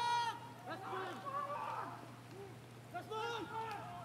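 Distant men's voices shouting short calls, several in a row with pauses, as Marines call out during their post-assault reorganisation and head count; a steady low hum runs underneath.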